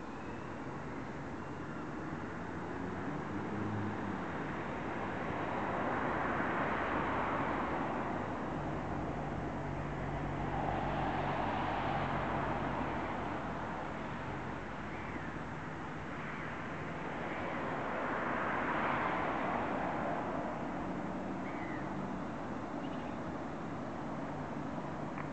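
Small electric coaxial-rotor RC helicopter (Esky Big Lama) flying overhead, its rotors whirring against outdoor traffic noise that swells and fades several times.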